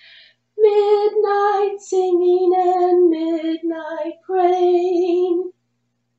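A woman singing a short phrase of about five slow, held notes, sight-singing the notes on a staff in a solfège echo exercise.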